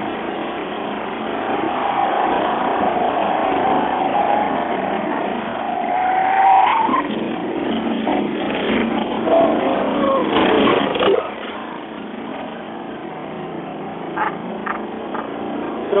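Lexus car's engine heard from inside the cabin at track speed. Its note climbs steadily for several seconds and breaks off about seven seconds in, then falls and climbs again briefly around ten seconds in.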